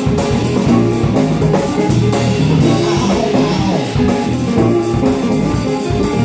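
Live band playing an instrumental rock-blues passage: semi-hollow electric guitar over a drum kit keeping a steady beat.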